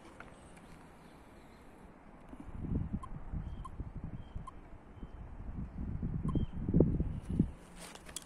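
Handling noise from a compact camera being moved and set down close to the microphone: irregular low thumps and rubbing that start about two seconds in and die away just before the end, heaviest near the end.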